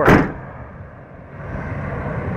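Steel tailgate of a Ram 2500 pickup slammed shut once right at the start, latching nice and solidly, with a short ring after the hit.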